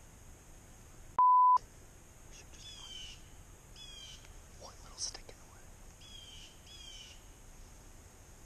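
A censor bleep, a single steady tone about a third of a second long, a little over a second in, covering a word. It is followed by a small bird calling in short, high, paired chirps, three or four times.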